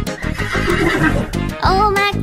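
A horse neighing, a cartoon sound effect, over children's music. The neigh is rough and wavering in the first half, and a voice starts singing near the end.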